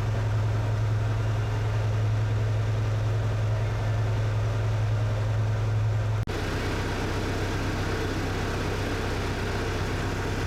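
Boat engine running steadily, a strong deep hum carried through the hull. About six seconds in it cuts off abruptly and is replaced by a steadier engine sound with less hum and more rushing noise.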